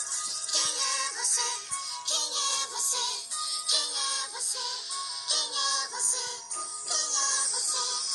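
A children's cartoon song: a vocal melody sung over instrumental backing with regular bright, high percussive hits.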